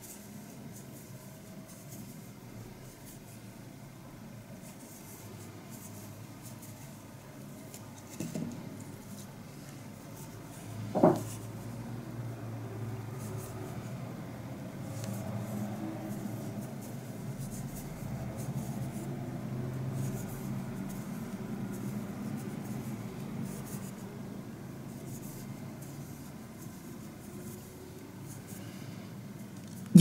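Faint rubbing and rustling of yarn drawn through stitches by a crochet hook worked by hand, with light scattered ticks and one brief, sharper sound about eleven seconds in.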